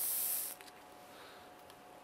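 Flexographic printing plate being peeled back off the adhesive sticky-back mounting tape on the plate cylinder: a short, high-pitched hissing peel that stops about half a second in.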